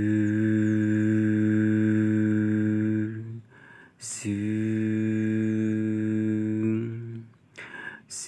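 A man's voice holding a low, steady hum, twice, each about three seconds long with a short break between: a vocal imitation of the engine of a toy excavator as it is worked by hand.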